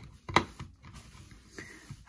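A single short, sharp click about a third of a second in, then faint handling noise, as a USB charging cable is handled against the plastic casing of an LED work light.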